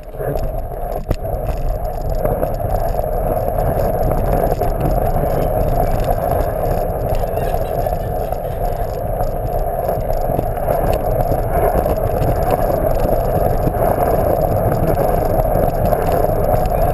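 A PlasmaCar ride-on toy's plastic wheels rolling steadily over a hardwood floor: a continuous rolling noise carried through the car's body to a camera mounted on it.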